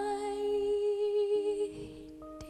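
Female singer holding one long note with a slight vibrato over sustained piano notes; the note ends near the end as a new piano note sounds.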